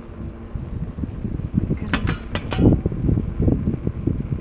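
Riding noise from a tandem bicycle on a paved road: an uneven low rumble of wind and road on the bike-mounted camera's microphone, with a few sharp clicks or rattles about two seconds in.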